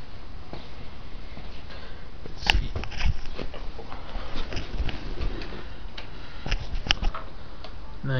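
Handling noise from a small handheld camera being moved, with scattered clicks and taps; the sharpest click comes about two and a half seconds in.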